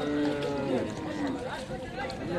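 A cow mooing: one long, low moo that breaks off under a second in.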